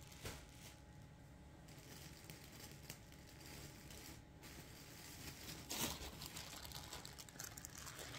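Faint crinkling of a clear plastic bag of yarn skeins being handled, in short scattered rustles with a louder rustle near six seconds in.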